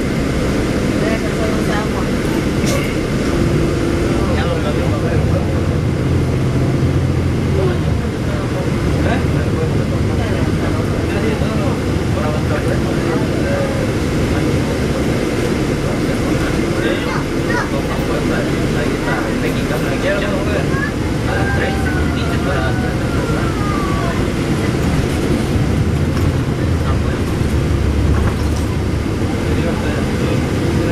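Inside a NABI 40-foot transit bus under way: its engine running with road rumble, the engine note rising and falling as the bus drives.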